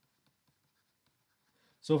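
Near silence, with faint scattered taps of a stylus writing on a tablet screen. A man's voice starts near the end.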